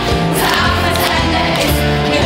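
A group of girls singing together over a live band, with bass and drum strikes under the voices: a song from a stage musical.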